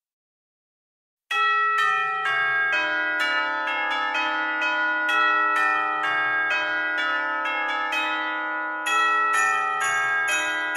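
Christmas-album music: after about a second of silence, bell-like chimes start a melody of struck notes, about two a second, each ringing on into the next. Near the end a high jingling layer and a low regular beat join in.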